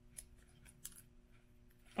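Nail transfer foil crinkling faintly as gloved fingers press and rub it onto a nail tip, a few short soft crackles.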